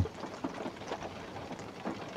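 Light rain falling on the roof of a van, heard from inside the cab as a faint, even hiss.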